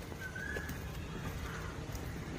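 A bird calling in short rising whistled notes, one just after the start and a fainter one about a second and a half in, over a steady low background rumble.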